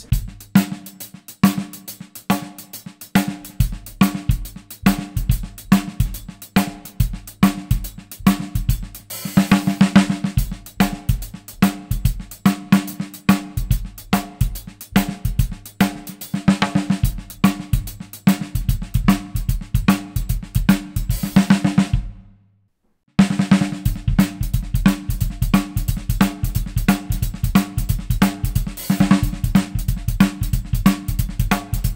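Drum kit playing a shuffle groove: triplet strokes between cymbal and snare, the middle triplet played as a ghost note on the snare, with a backbeat and bass drum. The groove stops briefly a little after two-thirds of the way through, then starts again.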